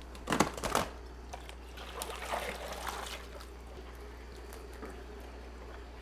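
A plastic fish bag crackles as it is opened about half a second in, then water trickles and pours from the bag into the aquarium, all under a steady low hum.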